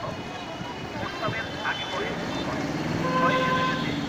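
A motor engine running, growing louder over the second half, with a horn-like tone sounding briefly about three seconds in and voices mixed in.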